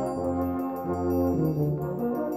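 A brass band playing held chords over low brass notes that change about every half second.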